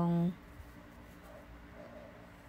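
Faint handling sounds of bamboo knitting needles and yarn as a stitch is worked.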